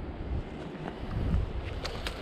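Wind buffeting the microphone as a low, uneven rumble, with a couple of faint clicks near the end.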